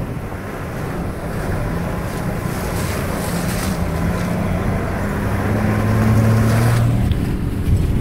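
Safari four-wheel-drive's engine running as it drives over a muddy grassland track, with wind buffeting the microphone held out of the window. The engine note swells about five seconds in and falls away just before seven seconds.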